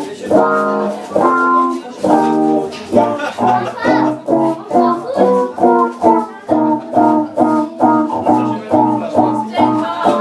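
Live band playing an instrumental break: electric guitar chords struck in a repeating rhythm over bass notes, a little faster from about three seconds in.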